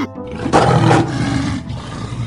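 A big cat's roar, used as a sound effect for a saber-toothed cat. It starts about half a second in, is loudest for the next half second, then trails off, over background music.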